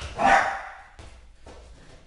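A Jack Russell terrier gives one short bark just after the start, followed by a couple of faint light knocks.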